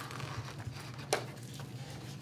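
Paper page of a hardcover picture book being turned, a soft rustle with one sharp tap about a second in, over a steady low room hum.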